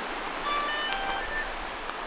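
Steady rushing of flowing river water, with a few faint, brief high tones about halfway through.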